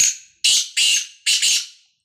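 Black francolin (kala teetar) calling: four loud, harsh notes in quick succession over about two seconds, the first short and the later ones longer.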